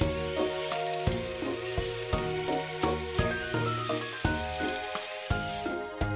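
A cartoon dental scaler sound effect, a high whine that wavers slowly up and down as tartar is scraped off the teeth, over light children's background music. The whine stops just before speech resumes.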